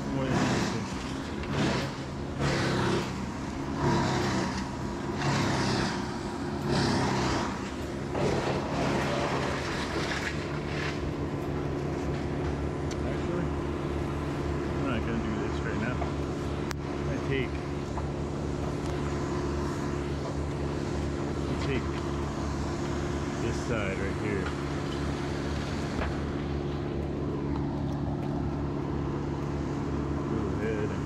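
An engine runs steadily below, a low even hum that holds through the whole stretch. For the first several seconds it is overlaid by swishing sounds about once a second.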